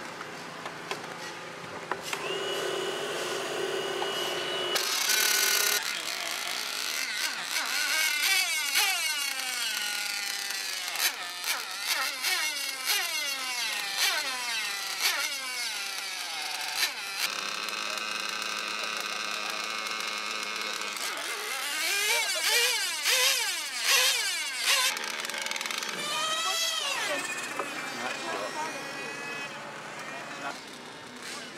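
Radio-controlled drag cars' motors revving and running, their whine sweeping up and down in pitch in two long stretches, with a short steady high tone near the start.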